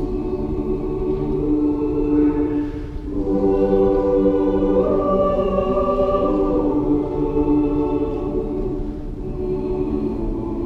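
Church choir singing long held notes, with a brief break for breath about three seconds in.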